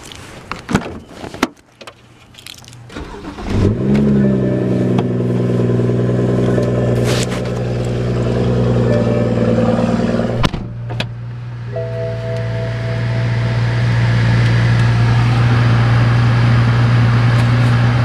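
Car door clicks and knocks, then the BMW 135i's N55 turbocharged straight-six starting about three and a half seconds in, flaring briefly and settling into a steady idle at about 1,000 rpm.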